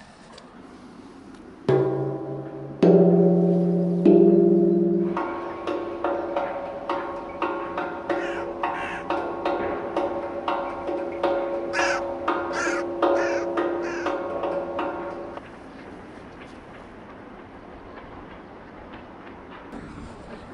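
Large steel tongue drum struck with a mallet: three single ringing notes about two seconds in, then a quick run of strikes for about ten seconds, the notes ringing on over one another, before the playing stops.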